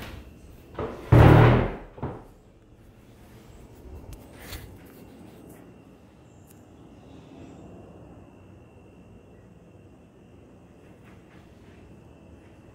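Handling noise of a phone being moved about: rubbing and a few knocks in the first two seconds, the loudest a heavy bump about a second in. After that, quiet room tone with a faint steady high whine.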